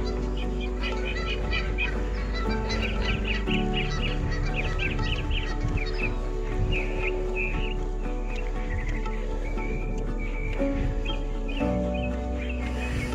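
Birds chirping in quick, high series over background music of long held chords. The chords change about three and a half seconds in and again near the end.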